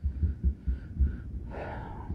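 Irregular low thumps and rumble on a handheld microphone, several times over two seconds, with no clear source beyond the microphone itself.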